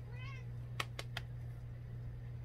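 A domestic cat gives one short, high meow that rises and falls in pitch, answering its name. About half a second later come three sharp clicks.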